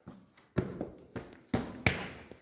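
Footsteps and scuffs on rock as people scramble through a narrow cave passage: about five sharp, irregular steps in two seconds.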